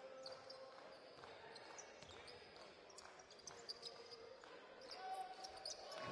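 Faint on-court sounds of a basketball game: the ball bouncing, short high sneaker squeaks on the hardwood, and players' voices.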